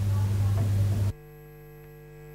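Electrical mains hum on the audio track: a steady low drone that drops off suddenly about a second in, leaving a much fainter hum with a few thin steady tones.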